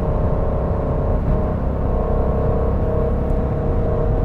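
Aston Martin Vantage F1 Edition's twin-turbo 4.0-litre V8, heard from inside the cabin, holding a steady drone at constant speed over a low road rumble.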